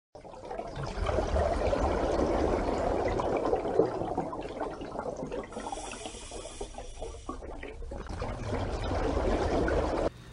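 Rushing, bubbling water sound that swells in the first second, eases off in the middle with a faint high tone over it, and builds again toward the end.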